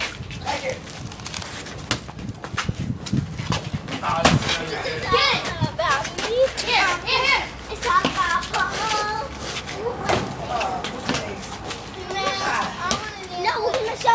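Children's high voices shouting and calling out during a backyard basketball game, growing louder and busier about four seconds in, with scattered sharp knocks.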